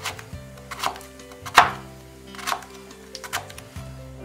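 Kitchen knife chopping carrots on a wooden cutting board: about five knocks spaced just under a second apart, the one near the middle loudest. Quiet background music runs underneath.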